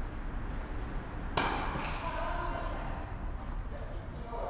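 A tennis racket hitting a ball sharply about one and a half seconds in, followed by a lighter knock a moment later.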